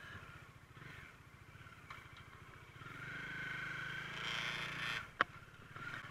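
Bajaj Dominar 400 motorcycle's single-cylinder engine running under way, with a fast steady pulse. It grows louder about three seconds in, then falls back after a single sharp click about five seconds in.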